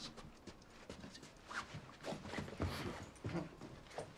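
Faint, irregular taps and scuffles of a dog being led on a leash, with a man coaxing it: 'come on'.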